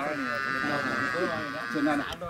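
A goat bleating, one long drawn-out call lasting nearly two seconds, with people talking underneath.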